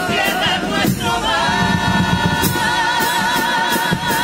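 A carnival comparsa's male choir singing in several-part harmony with guitar and drum. About a second in, the voices settle onto a long held chord with a wavering vibrato.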